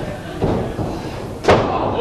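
One sharp impact about one and a half seconds in: a pro wrestler's stomp landing on his opponent's lower back and the ring mat, a blow to the kidneys.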